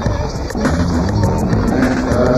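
Electronic music from a 1990 EBM cassette: sustained synthesizer tones over a regular percussive beat.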